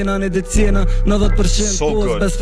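A man rapping fast in Albanian over a hip hop beat with steady bass.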